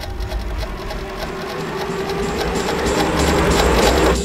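Trailer sound design: a swelling riser of noise with a rapid mechanical rattle and a low rumble beneath, growing louder and cutting off abruptly at the end.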